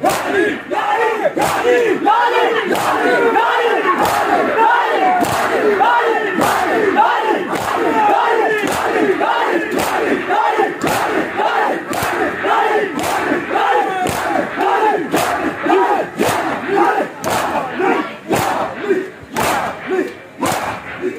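A large crowd of mourners performing matam: many men chanting together while slapping their bare chests with their palms in unison, the sharp slaps landing in a steady rhythm over the chant.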